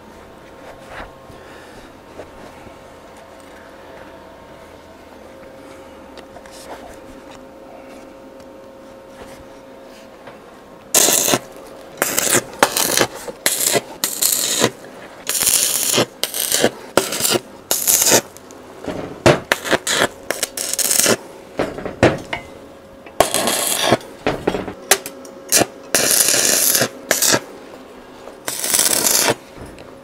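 Electric arc welding on steel: after a quieter stretch with a faint steady hum, the arc crackles in a long series of short bursts, each about half a second to a second, as the square-tube feet are tacked onto the cradle.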